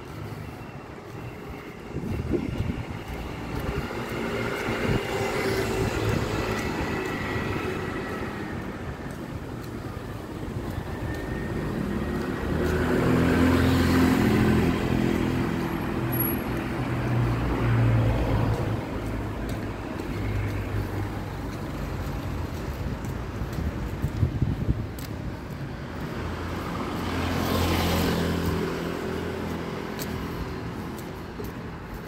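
Street traffic: cars and motor scooters passing one after another, each swelling up and fading away over an engine rumble, with the loudest pass-bys a little before halfway through and again near the end.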